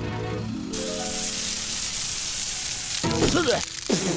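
Cartoon fire-hose spray sound effect: a steady rushing hiss of water that starts just under a second in and lasts about two seconds, over background music. A short vocal exclamation follows near the end.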